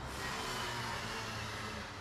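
A steady hiss with a low hum underneath.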